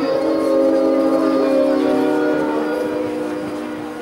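A long, steady chord of several horn-like tones sounding together, fading slowly near the end.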